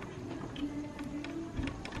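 Faint clicks and scraping of a small chained metal pin being pushed into a hole in a door frame to lock a shutter-style door, over a faint low hum.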